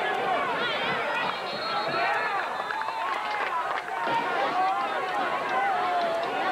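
Crowd of spectators talking over one another, a steady babble of many voices with no one voice standing out.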